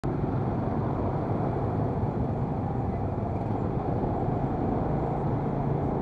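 Motor scooter's engine running at low speed in stop-and-go traffic, a steady low hum mixed with the noise of the surrounding cars and motorcycles.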